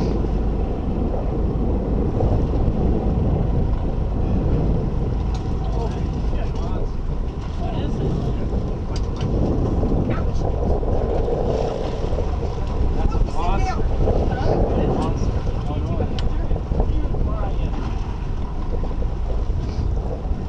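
Sportfishing boat's engines running steadily at low speed in gear, with wind noise on the microphone.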